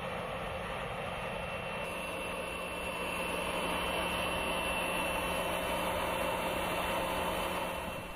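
Steady engine running noise with a low hum and a faint constant high whine, getting a little louder about two and a half seconds in.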